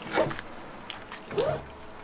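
A dog barking twice: a sharp bark just after the start and a shorter pitched yelp about a second later.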